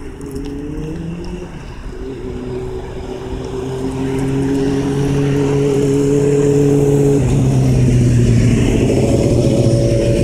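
An engine running steadily, growing louder about four seconds in, its pitch dropping about seven seconds in.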